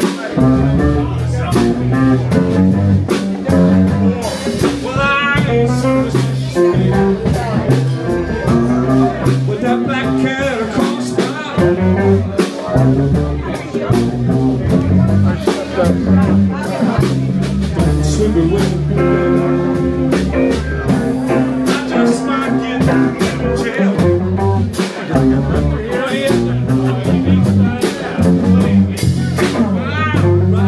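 A live blues band playing, with a guitar lead over bass notes and a drum kit keeping a steady beat.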